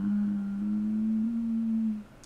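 A woman humming one long closed-mouth "mmm" on a steady low note that steps slightly higher a little past halfway.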